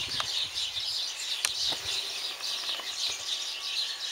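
A flock of sparrows chattering in a tree, with many short chirps overlapping into a continuous noisy chorus. A few sharp clicks stand out from it.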